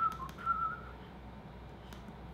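A man whistling a few short notes under his breath, the last one longer and wavering, all within the first second, with a faint click near the end.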